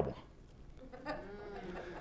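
A faint, wavering human voice from someone in the room begins about a second in, much quieter than the presenter's speech.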